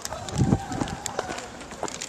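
Handheld camera jostled as its holder moves along a paved road: scattered knocks and rustles, with a low thud about half a second in.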